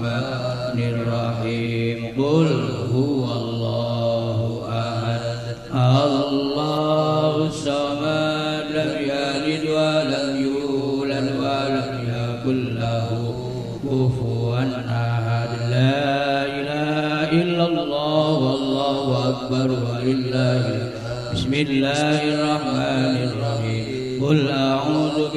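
Male voices chanting an Islamic prayer recitation in Arabic through microphones and a PA, in long, drawn-out melodic lines with held notes, between the short Quranic surahs of a communal prayer.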